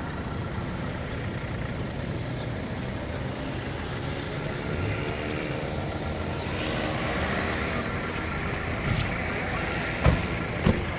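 Street traffic: vehicle engines running with a steady low rumble, one engine growing louder about halfway through.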